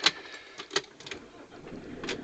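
Ignition key being pushed into a vehicle's ignition lock: two sharp metallic clicks about three quarters of a second apart, then a fainter one.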